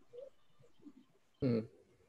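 A single short "hmm" from a person's voice, about one and a half seconds in, over a quiet background.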